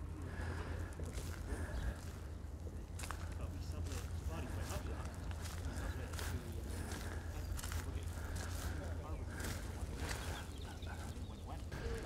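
Quiet outdoor ambience: a steady low wind rumble on the microphone, with footsteps on paving and faint distant voices.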